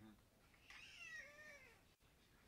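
A single faint, drawn-out high-pitched animal call lasting about a second, its pitch rising and then falling.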